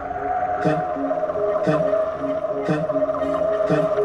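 Background music: sustained synth chords over a slow-changing bass line, with a soft beat about once a second.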